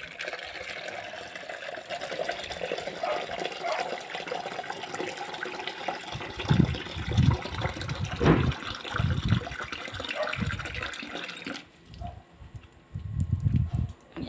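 Water splashing steadily onto the leaves and soil of potted plants as they are watered, stopping about twelve seconds in. A few dull bumps come through in the second half.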